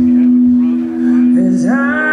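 Live band playing a slow country-rock song with a woman singing lead. A held note rings steadily, then near the end a voice slides up into a new sung note.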